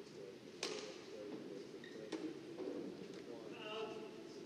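Badminton rackets striking a shuttlecock during a knock-up: sharp single cracks, the loudest about half a second in and another about a second and a half later, over the murmur of voices in a large sports hall. A short pitched sound comes near the end.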